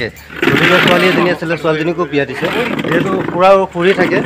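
Men talking, with several voices overlapping for the first couple of seconds.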